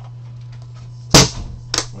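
The hinged lid of a Panini Eminence presentation box shutting with a loud, sharp clap about a second in, followed by a smaller knock about half a second later.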